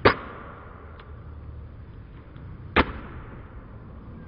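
Claw hammer smashing a pumpkin on a hard floor: two sharp blows about two and a half seconds apart, the first right at the start with a short ring after it.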